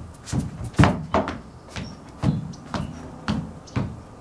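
Dance steps in flat shoes on a wooden deck: an irregular run of thuds and scuffs, about two to three a second.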